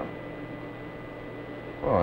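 Steady low hum and hiss with a faint thin high tone, with no distinct event in it.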